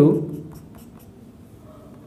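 Felt-tip marker writing on a whiteboard: a few faint short strokes as characters are drawn.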